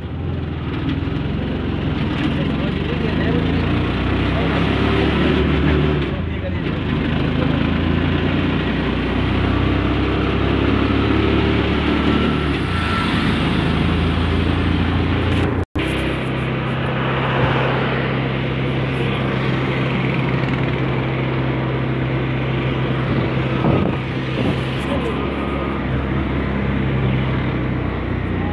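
An auto-rickshaw's engine running steadily as it drives along the road, heard from inside the open cabin with road and wind noise. The sound cuts out for an instant a little past halfway.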